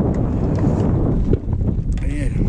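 Wind buffeting the camera microphone, a dense steady low rumble, with the wind suddenly picking up.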